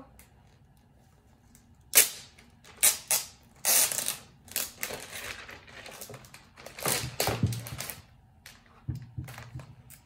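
Protective plastic film being pulled off the underside of a new MacBook Air: a run of sharp crackles and rustles, the loudest about two seconds in, with another cluster around seven seconds.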